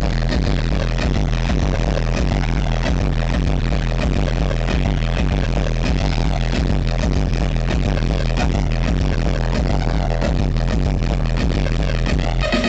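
Loud electronic dance music from a live DJ set on a concert sound system: a heavy, steady bass under a dense wash of sound, with no vocal line.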